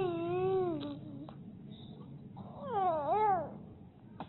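Infant crying: a drawn-out wail that falls away over the first second, then a second, wavering cry that rises and falls about three seconds in.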